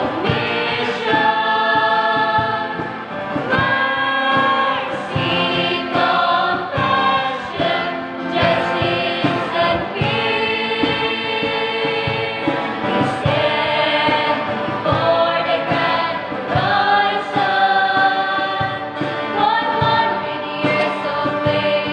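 A small group of young women's and a man's voices singing a Christian hymn together, holding long notes.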